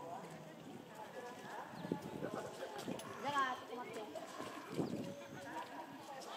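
Indistinct chatter of zoo visitors, with a higher-pitched voice calling out about three seconds in.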